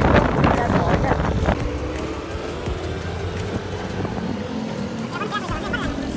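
Motorbike ride through traffic: a steady engine and road rumble with wind on the microphone. Pitched, voice-like sounds are heard over it in the first second or so and again near the end.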